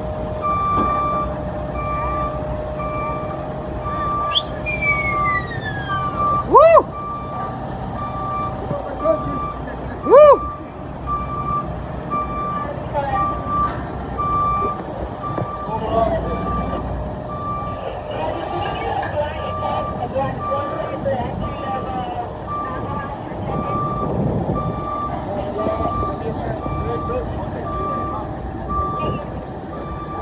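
A JLG telehandler's backup alarm beeping steadily at an even pace over its running diesel engine as the machine moves. Twice, at about 7 and 10 seconds in, a short, loud pitched sound rises and falls over the beeping.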